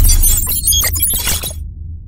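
Logo-intro sound effect: a bright, glassy shattering crackle lasting about a second and a half, over a deep bass rumble that fades out.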